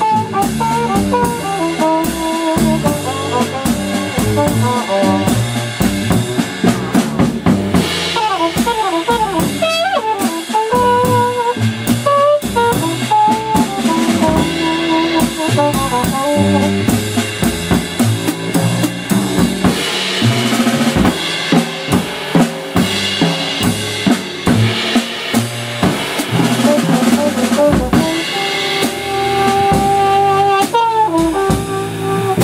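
Live jazz: a trumpet played with a hand-held mute over its bell runs quick melodic phrases over busy drum-kit playing with snare and rimshot hits. Stepping low notes sit underneath.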